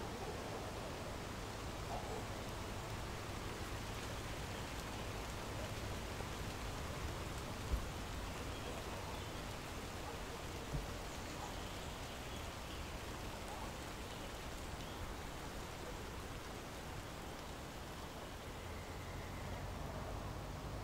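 Steady rain falling, an even hiss throughout, with two brief thumps about eight and eleven seconds in.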